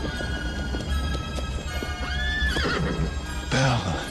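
A horse's hooves clattering on stone, and the horse whinnying, over a dramatic film score.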